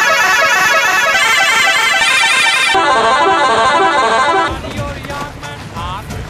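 A loud musical horn of the kind fitted to trucks plays a fast melody of high, rapid notes. About three seconds in it changes to a lower note repeated about three times a second, and it breaks off about four and a half seconds in.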